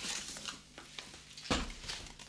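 Small children's scissors snipping through paper, with faint paper rustling and a single sharp knock about one and a half seconds in.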